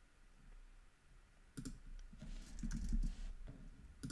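A short run of keystrokes on a computer keyboard, starting about a second and a half in, as a font name is typed into a search box.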